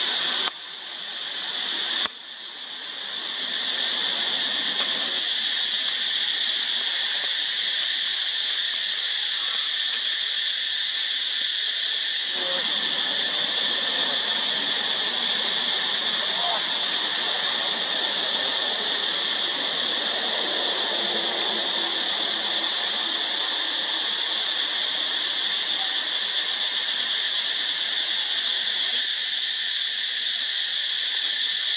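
Steady, shrill chorus of insects in the forest, one high, even drone. The sound drops out abruptly twice in the first two seconds and swells back in.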